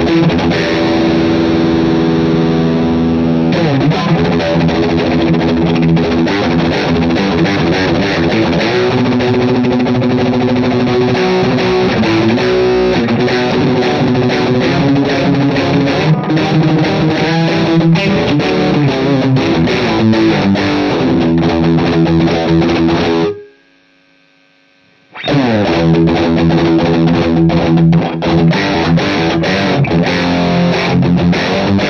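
Electric guitar played through a distorted amp with a stone pick: a continuous lead line of sustained notes with string bends. It cuts off suddenly about two-thirds of the way through, falls almost silent for about two seconds, then starts again.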